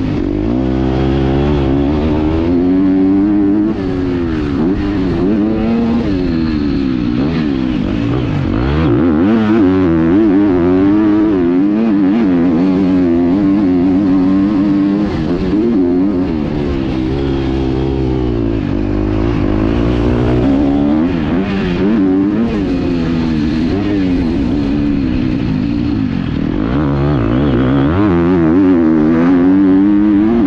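A 250 motocross dirt bike engine under hard riding, revving up and falling off again and again as the throttle is worked and gears are shifted. Its pitch climbs and drops every second or two.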